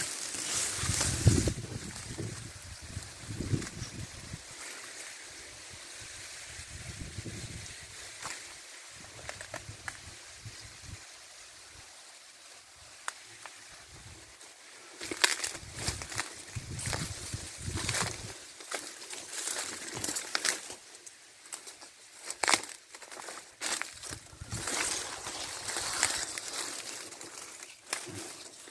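Dry grass and cane leaves rustling and crackling as someone pushes through tall vegetation, in irregular short bursts that come thick and fast from about halfway through.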